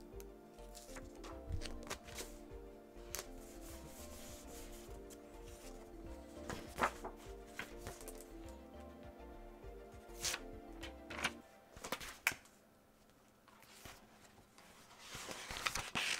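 Paper rustling and light clicks as a sketchbook's pages are turned and stickers handled, over background music that stops about 11 seconds in. Near the end comes a longer rustle of pages flipping.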